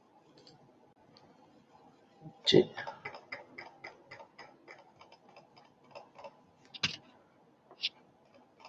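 Computer mouse or keyboard clicks picked up by a laptop microphone while paging through a PowerPoint slideshow: a louder knock a couple of seconds in, then a quick run of clicks at about five a second, and another sharp click near the end.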